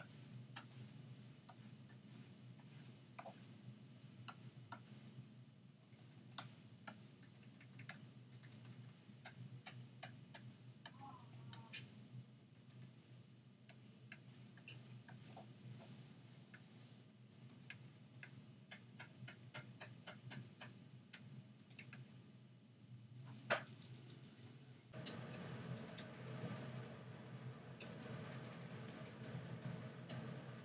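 Faint, irregular clicks and taps from hand work at a computer desk, over a low steady hum. One sharper click comes about two-thirds of the way through, and the hum grows louder about 25 seconds in.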